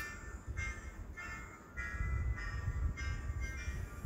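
A thin, tinny melody playing from a musical greeting card's sound chip in the gift box, its notes coming in short phrases about twice a second, over low handling rumble.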